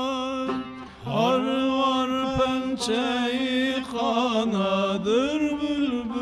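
A man's voice singing a Turkish folk song, unaccompanied by other voices. It opens on a long held note, breaks off briefly, then runs into a wavering, heavily ornamented line with vibrato. A plucked long-necked lute is faintly audible underneath.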